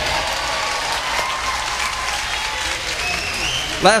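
Live audience applauding steadily, with a few higher tones in the crowd noise near the end.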